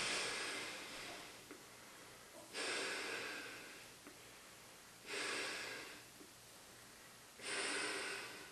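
A person breathing through a US M24 aircrew gas mask: four breaths about two and a half seconds apart, each a second-long hiss of air through the mask that fades out.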